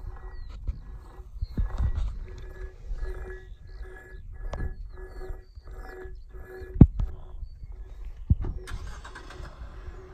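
Steel wire rope being pulled and worked against a steel fence post, with two sharp metallic knocks, the first about seven seconds in and the second a second and a half later. Wind buffets the microphone throughout, and a faint steady tone pulses on and off underneath.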